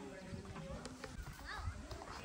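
Faint background voices of people talking at a distance, over irregular soft low thuds.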